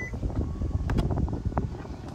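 Wind buffeting the microphone, with a few sharp clicks as the rear liftgate of a Hyundai Santa Fe plug-in hybrid is unlatched and opened.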